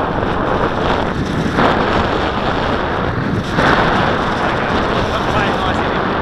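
Wind buffeting the microphone: a loud, steady rushing noise that swells in gusts about one and a half and three and a half seconds in.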